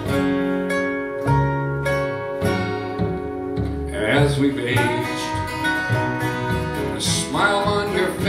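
Acoustic Americana band playing an instrumental break: acoustic guitars, upright bass and steel guitar, with notes sliding upward about halfway through and again near the end.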